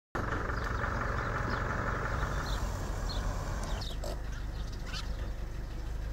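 Steady outdoor background rushing, such as wind or distant traffic, that drops in level about two-thirds of the way through, with faint, brief chirps of small birds now and then.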